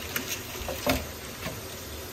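Crisp fried peyek (Indonesian rice-flour crackers studded with mung beans) rustling and crackling as a hand lifts one from the pile on a paper towel, with a few light, dry snaps, the clearest about a second in.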